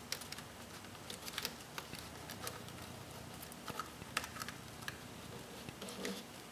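Faint, irregular small clicks and scrapes of a plastic fork working into a plastic seedling cell tray, loosening potting soil to lift out seedlings.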